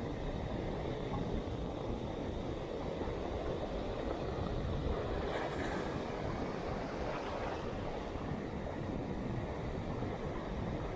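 Wind buffeting the microphone over the steady wash of surf on the beach, with a brief louder hiss between about five and seven and a half seconds in.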